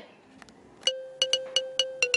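A bright chiming sound effect. After a near-silent first second comes a quick run of bell-like pings over a held tone.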